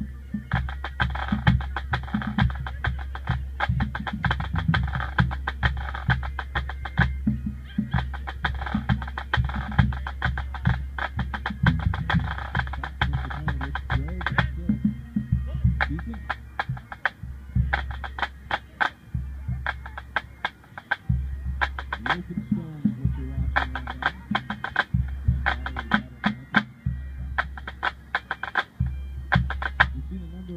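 Pipe band drum corps playing a drum salute: snare drums playing fast rolls and rudiments over a steady bass drum beat, with tenor drums. About halfway through the snare playing thins to sparser, separate strokes while the bass drum carries on in short phrases.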